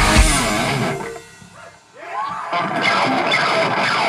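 Live melodic death metal band, with distorted electric guitars, bass and drums, playing the song's last loud hits, which cut off about a second in. The rest is quieter, scattered guitar ringing and noise as the song ends.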